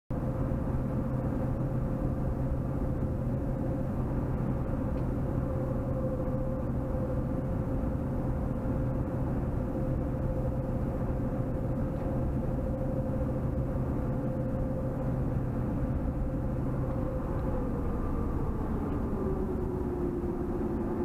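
Car cruising at highway speed, heard from inside the cabin: a steady engine and tyre drone. Near the end the engine note drops in pitch.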